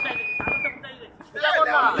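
A person whistling one long, high, steady note that swoops up at its start and stops about two-thirds of a second in.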